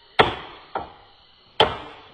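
Hammer driving a chisel into a wooden plank: three sharp blows, the first and last loud with a lighter one between.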